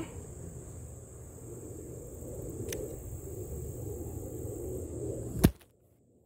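Low rustling and handling noise, then a single sharp thump about five and a half seconds in as the camera stand topples over onto the ground; the sound cuts out almost entirely right after it.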